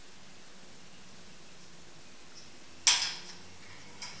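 Quiet room hiss, then one sharp click about three seconds in as the bleed syringe and hydraulic shift lever are handled.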